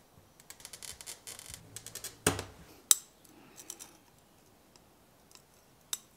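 Oil-fed Toyo glass cutter scoring a line across red stained glass: a fine, crackling run of small ticks for about two seconds. Then two sharp clicks, a little past two and nearly three seconds in, and a few faint ticks.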